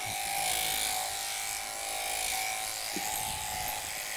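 Motorised sheep-shearing handpiece running with a steady buzzing hum as it clips through a sheep's fleece.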